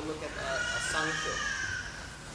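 A man's voice speaking, a drawn-out "so" before he goes on explaining.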